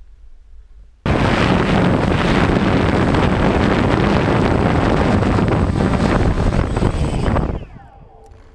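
Quadcopter drone's propellers buzzing loudly close to the microphone as it comes in to land, starting suddenly about a second in. Near the end the pitch falls as the motors spin down and stop.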